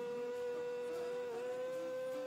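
Live worship music with a singer holding one long, steady note over the accompaniment.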